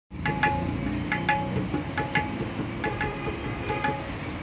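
Tabla played by hand: a repeating pattern of ringing, clearly pitched strokes on the dayan, coming in quick pairs a little under once a second, over the low resonant sound of the bayan.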